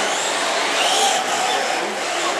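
Traxxas Slash 4x4 RC short-course truck's electric motor whining as it drives the track, its pitch rising to a peak about a second in and then falling away.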